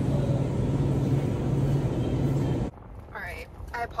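Grocery store ambience: a steady low hum under a noisy background wash. It cuts off abruptly about two and a half seconds in, leaving a quieter car cabin where speech begins near the end.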